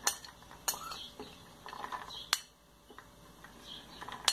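A metal spoon scraping and clinking against a ceramic plate as loose corn kernels are pushed off into a plastic blender jar. Three sharp clinks stand out, at the very start, just under a second in, and a little after two seconds, among fainter ticks of kernels dropping.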